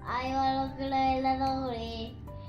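A young child singing, holding one long note for about a second and a half before the pitch drops near the end, with background music underneath.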